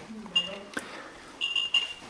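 Geiger counter's speaker sounding in short high-pitched chirps: a brief one early, then two longer ones close together near the end, with a couple of sharp clicks in between.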